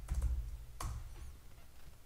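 Computer keyboard typing: a few quick keystrokes, then one louder key press a little under a second in, over a faint low hum.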